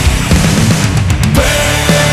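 Loud heavy rock music with a steady driving beat; about a second and a half in, a long held note comes in over it.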